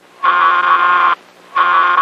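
Hospital public-address paging signal: two long, steady electric tones of the same pitch, each just under a second, that start and stop abruptly. It is the attention signal that comes before a staff page.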